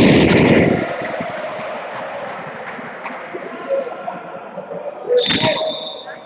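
Indoor volleyball match in a gym hall: a loud noisy burst in the first second, then a steady wash of hall noise, and a short loud burst about five seconds in followed by a thin steady high tone.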